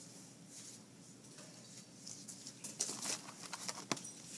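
Faint room hum, then from about halfway a run of small clicks and rustles, the sharpest one just before the end.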